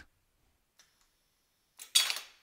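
Near silence, then near the end a sudden sharp metallic clatter as the SMC MAP 201 station's pneumatic cylinder kicks the workpiece out down the sheet-metal ejection chute. It kicks it out pretty fast because no speed control valve is fitted on the cylinder.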